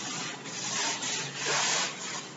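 A duster rubbing across a chalkboard, wiping off chalk writing in several strokes, the longest and loudest in the second half.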